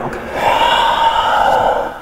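A man's long, controlled exhale, breathed out audibly for about a second and a half as he moves into downward dog.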